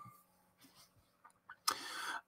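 Near silence, then a short breathy intake of breath near the end, just before speech resumes.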